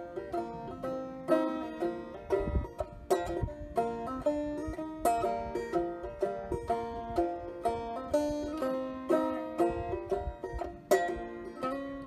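Banjo played solo, a steady run of plucked notes and chords with a regular picking rhythm, with no singing yet.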